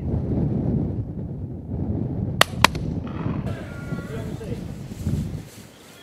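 Low, steady wind rumble on the microphone, broken about halfway through by two sharp cracks a quarter of a second apart.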